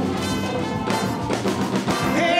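Live band playing a blues number with electric guitars, saxophone and drum kit, the drums marking a steady beat.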